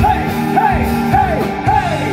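Live band playing with drums and electric guitars, while a vocalist repeats a short rising-and-falling call four times, about half a second apart.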